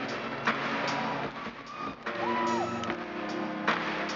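Live rock band playing an instrumental passage with electric guitar, recorded from among the audience.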